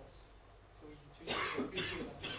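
A man coughing twice in quick succession, starting about a second and a half in.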